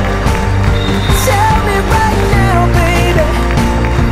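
Background music with a steady beat and a gliding melody line.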